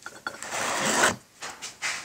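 A wooden sand-casting flask and its packed molding sand scraping and rubbing as the flask is lifted off the mold. There is a gritty scrape lasting about half a second, then a shorter one near the end.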